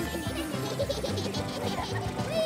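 Cartoon background music with a rapid, evenly pulsing buzz of a sound effect, about eight to ten pulses a second.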